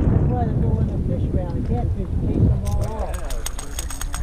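Low wind rumble on the microphone with faint voices in the background, then, in the last second or so, a fast run of sharp clicks while a small catfish is being unhooked with pliers at the side of the boat.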